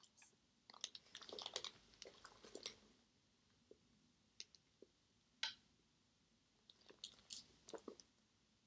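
Faint handling sounds of two small quilted leather handbags with metal chain straps being picked up and held: scattered light clicks and rustles, busiest in the first few seconds and again near the end.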